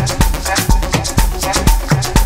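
Afro house DJ mix: a steady four-on-the-floor kick drum about two beats a second, with quick percussion strokes in the highs between the kicks.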